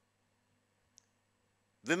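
Near silence in a pause, broken by one faint, short click about halfway through; a man's voice resumes near the end.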